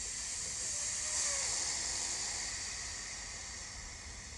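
Air hissing steadily out of a high-pressure rubber lifting airbag as it is deflated to lower a heavy load onto cribbing; the hiss swells about a second in and then slowly fades.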